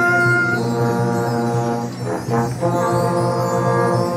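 Brass band of trumpets and trombones playing held chords, moving to a new chord about half a second in, with a short break and a fresh sustained chord shortly after the midpoint.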